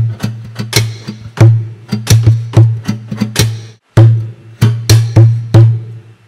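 Acoustic guitar played as a drum kit: thumps on the body for the bass drum and slaps across muted strings for the snare, in a steady hip-hop groove of sharp hits, each leaving a short low ring from the guitar. The groove breaks off briefly about two-thirds of the way through, then starts again.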